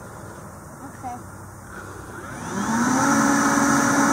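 Kobalt leaf blower starting up about two seconds in: a rising whine that settles into a steady run as it blows air down a duct hose into a container of baking soda. It is working against a lot of back pressure from the container.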